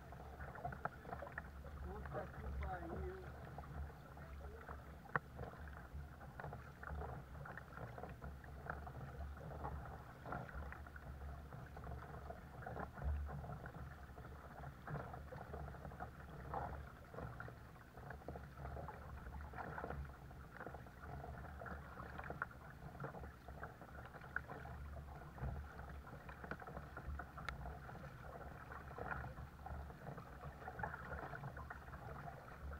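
Kayak paddle blades dipping and splashing in calm sea water, stroke after stroke, with water washing along the hull of a sit-on-top kayak.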